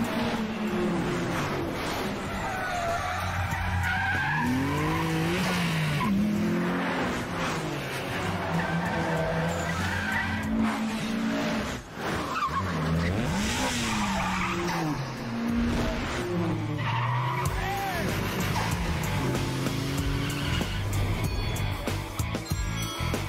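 Sports car engines revving up and down repeatedly as the cars race and drift, with tyre squeal, over a music track.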